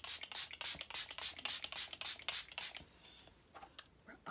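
Hand-pumped bottle of mattifying makeup setting spray misting onto the face in a quick run of short hisses, about five a second, stopping a little before three seconds in.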